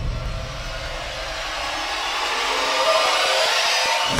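Animated-logo sound effect: a sustained rushing whoosh left over from a boom, its hiss growing brighter and a little louder toward the end while the low rumble fades away.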